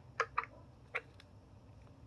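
A few short clicks as the flat-face attachment head is pushed into the massage gun's socket; the gun is not running.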